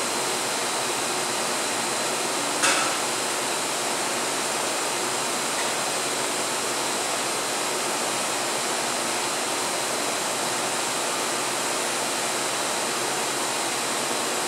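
Steady rushing background noise, like a fan or ventilation running, with one short sharp click about three seconds in.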